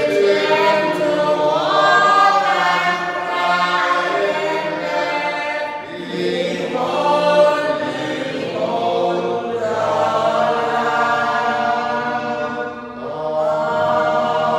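Voices singing a slow hymn in long held phrases, with short breaths between phrases about six and thirteen seconds in.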